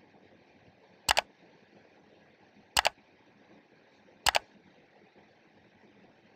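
Three mouse-click sound effects from a like, subscribe and bell button animation. Each is a quick double click, like a press and release, and they come about a second and a half apart.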